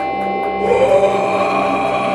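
Live band's amplified stage sound: a held, steady drone with several ringing tones sustaining through the amplifiers. Noise in the room swells from about two-thirds of a second in.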